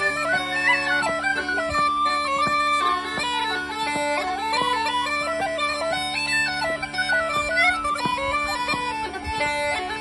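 Uilleann pipes and a tin whistle playing a traditional Irish jig together: a quick, busy melody over the pipes' steady drones.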